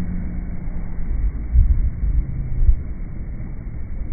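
Low, muffled rumble of a boat underway at sea, heard slowed down, with a few heavy thuds about halfway through.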